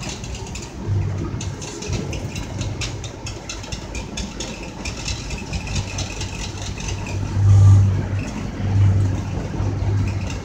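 Running noise heard inside a moving passenger train: a steady rumble with frequent short clicks, and a low hum that swells twice near the end.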